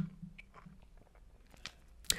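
A quiet pause with faint room hum and a few small, faint clicks, the clearest about a second and a half in.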